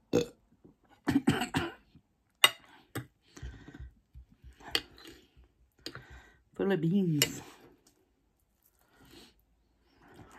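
A person burping once, a low, wavering belch lasting under a second about two-thirds of the way in, among mouth sounds and a few sharp clicks.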